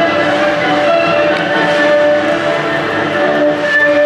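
Background music with sustained, held notes.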